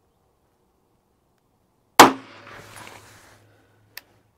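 A single shot from an HK VP9 9mm pistol about two seconds in, firing a light, fast 70-grain load at about 1,760 feet per second, with an echo that dies away over about a second. A light click comes just at the end.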